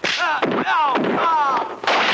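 Martial-arts film fight sound: a hard punch impact at the start, then a man's shouts falling in pitch over the next second and a half, and another impact near the end.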